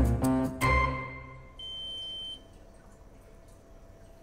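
A short music sting fades out over the first second and a half. Then a handheld bacterial swab meter gives one steady high beep, lasting under a second, as its reading comes up.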